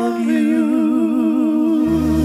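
A male singer holds one long note with a wide, even vibrato over a sustained chord, with almost no bass beneath; near the end the band's bass comes back in.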